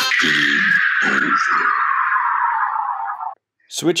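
Countdown timer's end-of-time sound effect: a hissy tone that slides steadily down in pitch for about three seconds and cuts off sharply, with short lower tones pulsing under it in the first two seconds.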